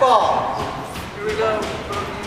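Indistinct spectator voices in a large echoing hall: a brief call at the start and a shorter one past the middle, with no clear words.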